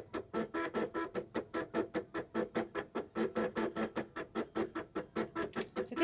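Cricut Expression cutting machine's stepper motors driving the pen carriage and mat as it draws a shape with a pen in place of the blade: a pitched, pulsing whine of about eight even pulses a second.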